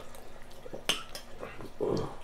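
Eating sounds at a table: a spoon clicks against a bowl about a second in, and a short, louder mouth noise from the eater comes near the end.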